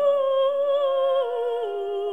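Operatic soprano singing a held high note with wide vibrato, then stepping down twice to a lower held note, with little accompaniment under it.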